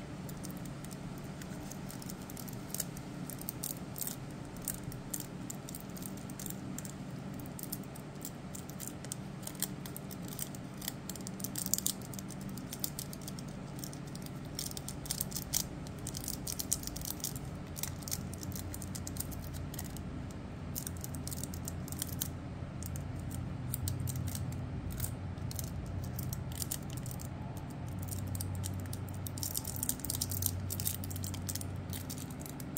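Scattered light crinkles and small clicks of nail transfer foil being handled and pressed onto a plastic press-on nail tip by hand, over a steady low hum.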